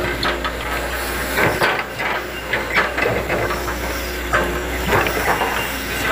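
Hitachi hydraulic excavator working: its engine runs steadily under a constant hiss, with irregular knocks and clanks as the bucket and boom move.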